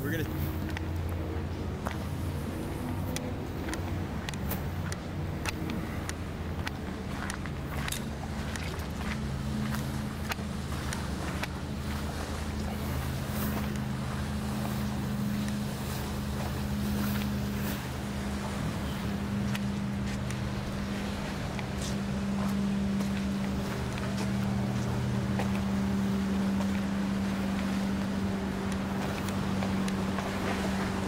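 Motorboat engine running steadily as a cabin cruiser passes close by, a low drone that grows louder in the second half.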